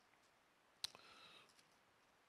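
Near silence, broken a little under a second in by one faint sharp click and a brief soft rustle of Bible pages being leafed through.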